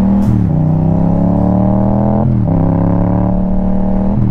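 Motorcycle engine pulling under acceleration, its note climbing steadily and dropping sharply twice, near the start and about halfway through, as the rider shifts up a gear.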